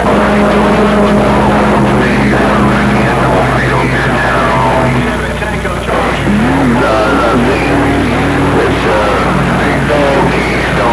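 CB radio receiving a crowded long-distance skip channel: overlapping, garbled transmissions with steady droning tones held under them. The signal weakens about halfway through.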